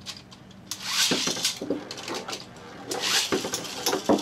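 Metal Beyblade spinning tops (Poison Zurafa and Spiral Capricorn) launched into a clear plastic stadium. About a second in, a rasping whirr and clatter start, then the tops spin and clash with sharp clicks. Near the end comes another burst of clashing as one top is knocked out of the stadium.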